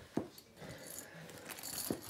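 Backpack diaper bag being handled and opened: rustling, with its metal strap clips clinking and two sharp knocks, one just after the start and one near the end.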